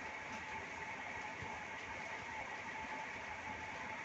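Steady background hiss with a faint, even hum running through it, unchanging throughout.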